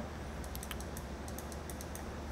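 Computer keyboard typing: a run of light, irregularly spaced key clicks.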